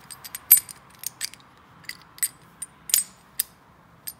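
Sharp metal clicks and clacks of a 7.5-inch gauge Titan Trains coupler whose knuckle is being worked by hand, about a dozen at uneven intervals, the loudest about half a second in.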